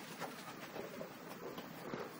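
Faint, irregular rustling and light pattering of a small white terrier's paws trotting over artificial turf.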